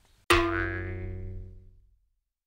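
Title-card sound effect: a single struck tone, rich in overtones, that starts sharply about a quarter second in and rings out, fading over about a second and a half.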